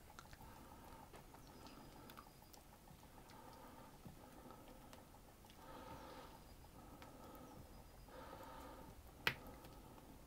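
Faint stirring of friand batter with melted butter in a bowl: a utensil scraping and working through the thick mixture, with light ticks and one sharp click against the bowl near the end.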